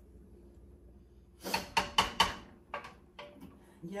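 A quick run of four sharp knocks or clacks, about a second and a half in, followed by a few lighter taps.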